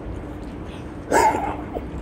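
A single short, loud voice-like call about a second in, over a steady low hum.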